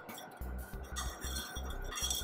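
Glass stirring rod clinking lightly against the inside of a glass beaker as a liquid is stirred, over quiet background music with a steady beat.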